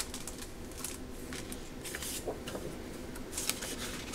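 Sheets of patterned scrapbook paper rustling and sliding as they are leafed through by hand, a string of soft brushes and flicks.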